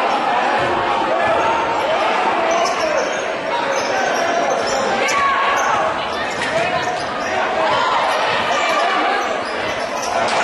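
Basketball being dribbled on a hardwood court in a gym, amid overlapping voices of players and spectators echoing in the hall.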